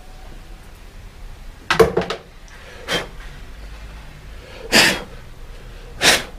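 Three short, sharp bursts of breath noise from a person close to the microphone. The last, near the end, is the longest and loudest.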